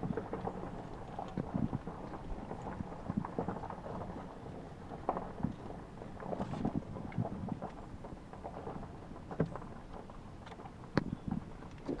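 Low, steady rumble of a car driving slowly, heard from inside the cabin, with scattered small clicks and knocks.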